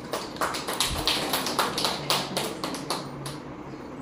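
A quick, irregular run of sharp taps, about a dozen over some three seconds.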